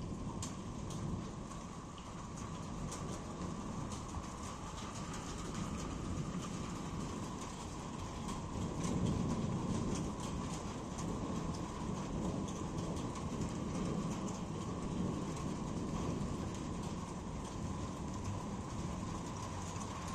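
Steady rain, with drops ticking on a nearby surface, and a low rumble of thunder swelling about nine seconds in.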